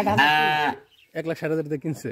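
A young black-and-white calf moos once, a single steady call under a second long right at the start.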